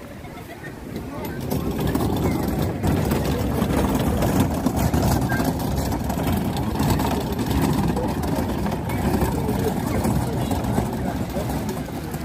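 Outdoor crowd hubbub of many people talking, over a steady low rumble that grows louder about a second and a half in.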